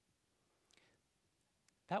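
Near silence: quiet room tone, with a faint short hiss a little under a second in and a small click near the end, just before a man's voice starts again.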